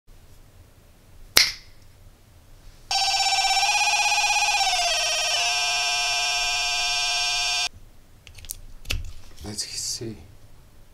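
Electronic tone from a small homemade push-button sound circuit: it holds one pitch for about two seconds, slides down to a lower pitch and holds it, then cuts off suddenly. A sharp click comes about a second before it, and small clicks of handling follow.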